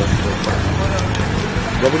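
Steady low rumble of vehicle engines under faint, scattered voices.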